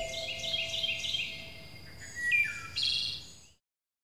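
Birds chirping: a string of short high notes, a couple of falling notes and a quick trill, ending abruptly about three and a half seconds in.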